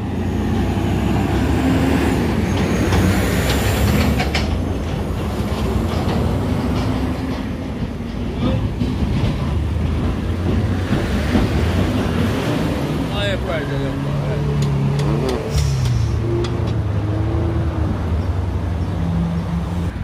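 Minibus engine running close by with a steady low rumble, and voices talking over it now and then.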